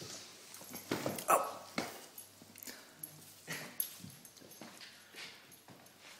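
A dog chasing and biting at its own tail, making a string of short, irregular sounds, the loudest just over a second in.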